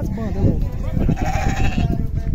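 A goat bleating once, a single drawn-out call of about a second starting around a second in, over background chatter.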